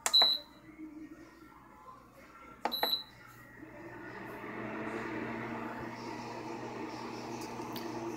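Two short beeps from a Nesco portable induction cooktop's touch buttons, each with a click, about three seconds apart. About a second after the second beep, a steady hum builds up and holds as the cooktop starts running and powering the heater it feeds.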